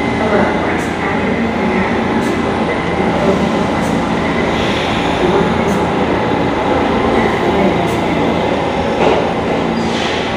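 New York City Subway B train of R68 cars pulling into a station and braking to a stop. A steady, loud rumble of wheels and running gear with a thin high whine held over it.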